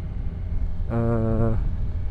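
Kawasaki Ninja 1000SX's inline-four engine running at a steady low rumble as the motorcycle cruises slowly at about 40 km/h.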